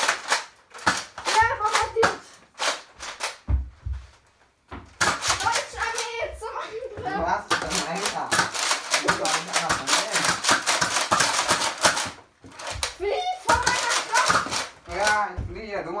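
Children's excited voices mixed with sharp, rapid clicking from Nerf foam-dart blasters in play, densest for several seconds in the middle, with one dull low thump a few seconds in.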